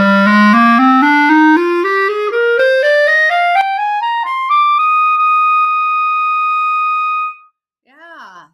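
Jupiter JCL1100S wooden B-flat clarinet playing a rising scale step by step from its lowest note up about three octaves, then holding the top note for a couple of seconds before stopping. The run tests how evenly the instrument speaks through its registers, which the player finds easy to blow with no extra effort needed in any range.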